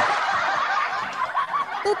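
A person laughing in a high voice, one long, excited laugh whose pitch wavers up and down.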